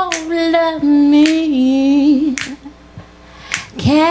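A woman singing a cappella, holding one long note that wavers near its end, over a sharp click keeping the beat about once a second. The voice breaks off for about a second near the end, then the next phrase begins.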